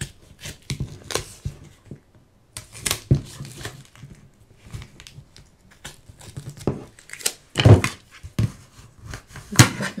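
Inch-and-a-half-wide tape being pulled off its roll and pressed down onto paper over chipboard: irregular ripping and crinkling rasps with small taps from hands on the paper. The louder rips come about three-quarters of the way through and near the end.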